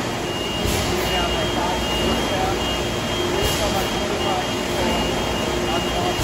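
Steady din of plastics-plant machinery, with indistinct voices talking over it and a faint steady high tone running through most of it.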